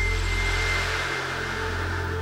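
A whoosh of noise swells and fades over a sustained low synthesizer drone, with a thin high tone in its first second: the sound design of a production-company logo sting.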